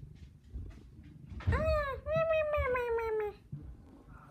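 Domestic cat meowing twice close to the microphone: first a short meow that rises and falls, then a longer one that slowly drops in pitch. Low rubbing and handling noise from the camera against the cat's fur runs around the meows.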